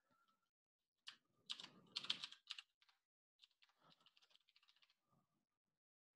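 Faint typing on a computer keyboard: clusters of key clicks in the first half, then a few scattered quieter taps.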